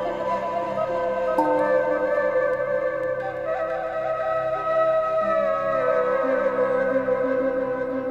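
Ambient electronic instrumental music: layered sustained tones, with a lead voice that glides down in pitch about five seconds in.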